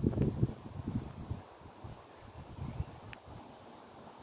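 Outdoor ambience with wind buffeting the microphone, strongest in the first second and a half and then dropping to a quiet rustle, with one faint click near the end.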